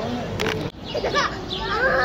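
Voices of people chattering outdoors, some of them high-pitched like children's. A click and a sudden break come a little under a second in, and then the voices carry on.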